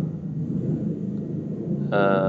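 A low, steady rumble in a pause between spoken sentences.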